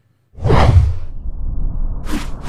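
Cinematic whoosh sound effect for an animated logo sting. It comes in suddenly about a third of a second in with a deep boom, peaks just under a second in, and trails off into a low rumble.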